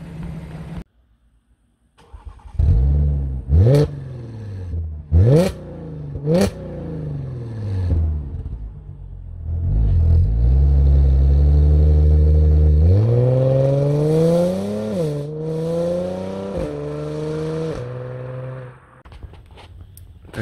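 Audi S5's 3.0 TFSI V6 running through a homemade custom exhaust with an X-pipe. It is blipped three times in quick, sharp revs, settles to a steady low idle, then is raised in two longer, slower revs that drop back near the end.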